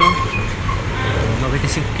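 Street traffic: a steady low rumble, with faint voices mixed in.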